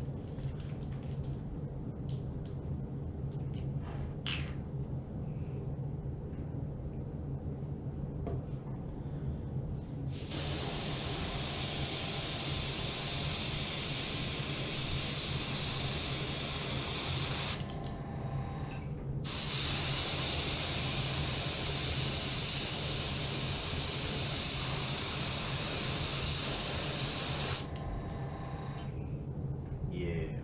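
Small kit airbrush spraying surface primer in two long bursts of hiss, about seven and eight seconds each, with a short pause between, over a steady low hum. The first ten seconds hold only the hum and a few small handling clicks.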